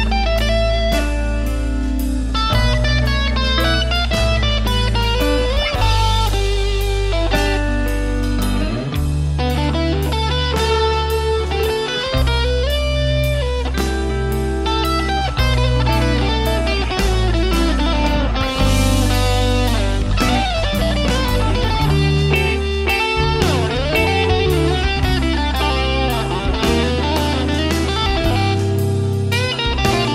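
Instrumental passage of blues-rock music: an electric guitar plays melodic lead lines with string bends over sustained bass notes and a steady beat.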